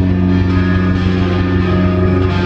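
Live progressive rock band playing an instrumental passage: electric guitar, bass guitar and drums, loud and steady, with the guitars holding sustained notes.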